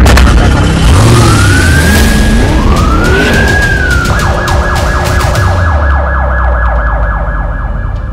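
Emergency siren sound effect over a deep rumble: two slow wails rising and falling, then about four seconds in it switches to a fast warbling yelp that runs until it cuts off just after the end.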